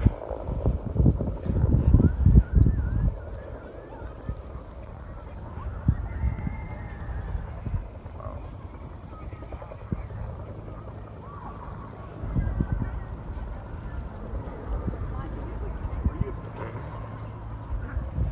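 Wind gusting on the microphone, strongest in the first three seconds and again about twelve seconds in, over faint distant voices and short high calls.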